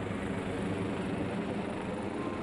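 Fire rescue helicopter passing low overhead, its rotor and turbine engine making a steady, even sound.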